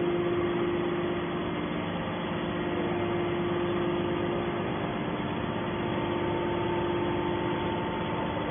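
Hydraulic power unit of a Y81T-135T scrap metal baler running steadily: an even mechanical hum with a held tone, joined by a fainter higher tone about halfway through.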